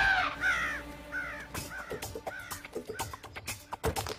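A cartoon pterodactyl cawing: a run of about six arching cries, each rising then falling in pitch, growing fainter and lower over the first two seconds, over background music. A scatter of light clicks and taps follows.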